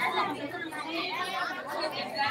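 Audience of young women chattering: many voices talking over one another at a moderate level, with no single voice standing out.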